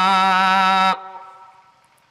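A man's voice chanting in Arabic, holding one long note with a slight waver in pitch, which stops about a second in; its echo then fades away.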